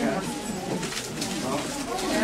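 Several people talking indistinctly at once, no single voice standing out.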